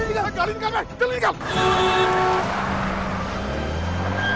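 A man's voice briefly, then a car horn sounding for about a second, followed by a car driving in, its engine and tyres a steady noise.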